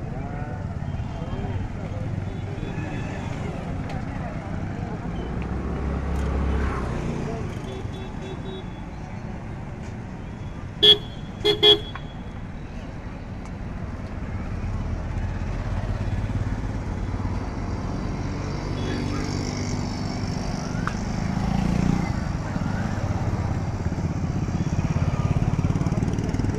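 Road traffic with motorcycles going past, and three short vehicle-horn toots close together about halfway through.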